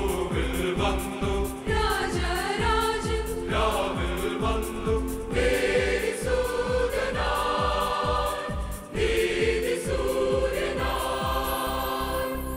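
Mixed choir of men's and women's voices singing a Malayalam Christian song in parts, over a steady instrumental beat.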